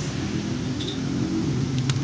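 A steady low mechanical hum, with a brief faint click near the end.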